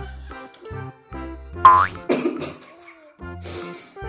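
Cheerful background music with a steady rhythm and bass line, and a comic sound effect about one and a half seconds in: a short, loud glide rising sharply in pitch.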